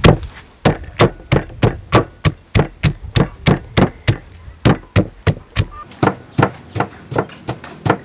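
A wooden pestle pounding green chilies in a large mortar, a steady run of thuds at about three strokes a second.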